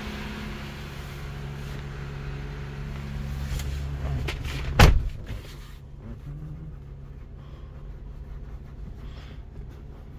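Jeep Wrangler engine idling steadily. There is a single loud thump about halfway through, after which the idle sounds quieter and more muffled.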